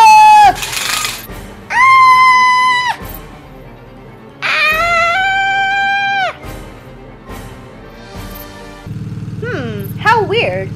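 Voices screaming 'Ahh!' in fright: a long held scream ends about half a second in, followed by two more long screams, each held at one high pitch. A short noisy burst sits between the first two, and a steady low drone starts near the end.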